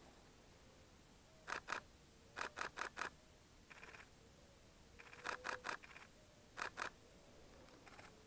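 DSLR camera shutters firing in five short bursts of two to four quick clicks each.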